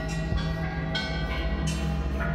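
Background score music: a low sustained drone with a few bell-like chimes struck over it, each ringing on.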